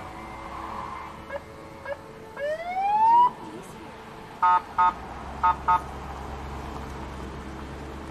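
Police car siren: one rising whoop about two and a half seconds in, then two pairs of short blips about a second later.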